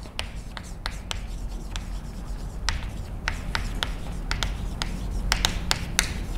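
Chalk writing on a blackboard: a run of short, irregular taps and scratches as letters are written, with a quick cluster of strokes near the end.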